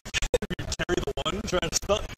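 Voices and laughter mixed with music, chopped into rapid stutters like a record-scratch edit effect.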